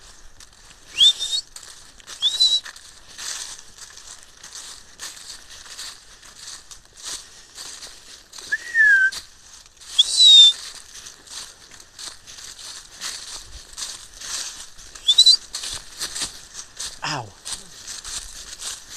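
Quick footsteps crunching through deep dry fallen leaves, about two steps a second, with a few short, high, rising whistles cutting in over them.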